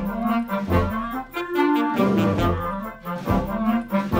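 Youth wind band playing a piece together, clarinets with brass over low bass notes.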